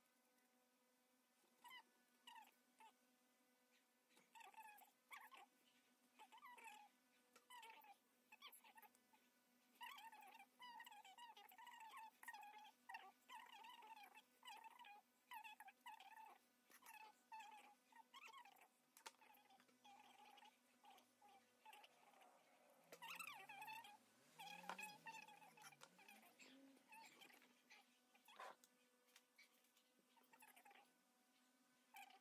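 Faint, repeated high whimpering of a French bulldog puppy kept shut in, coming in short sliding cries that grow more frequent after about ten seconds and die down near the end. Soft knife clicks and scrapes from peeling a green mango run alongside.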